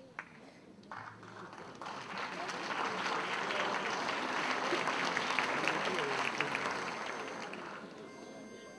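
Audience applause in an auditorium. It swells over the first couple of seconds, holds at its loudest through the middle, and dies away near the end.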